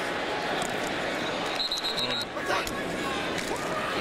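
Broadcast crowd and field noise in a football stadium, with indistinct voices. About halfway through, a referee's pea whistle trills briefly.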